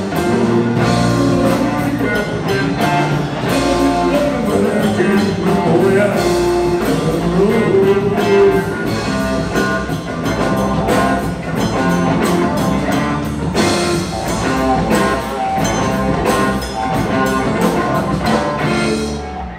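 Live blues-rock band playing: electric guitar, electric bass and drum kit, with a steady beat of drum hits under the guitar lines.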